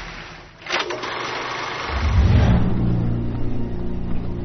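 A sharp swish about three-quarters of a second in, then a loud, low engine-like rumble that swells in about two seconds in and holds steady: a war-footage sound effect of heavy engines.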